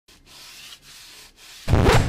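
Sandpaper rubbed by hand along the edge of a gypsum-board mould in three back-and-forth strokes. Near the end a loud, deep drum hit starts the music.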